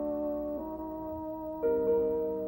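A bassoon and piano playing a classical chamber trio: the bassoon holds notes over piano chords. New chords come in about half a second in and again near the end, each fading after it is struck.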